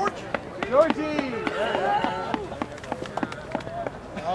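Sideline spectators shouting and calling out as play runs on, their voices rising and falling, with many short sharp clicks scattered throughout.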